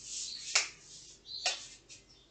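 An egg being tapped against the rim of a bowl to crack it: two short sharp taps about a second apart, after a brief soft rustle.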